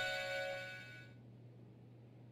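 A musical doorbell chime playing a long tune, its last notes ringing out and fading away about a second in.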